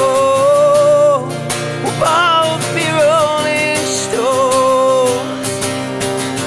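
Harmonica in a neck rack playing long held and bent notes over a strummed acoustic guitar.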